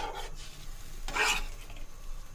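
Metal spoon stirring soaked rice through water and masala in a stainless steel pot, with one clear scraping swish about a second in.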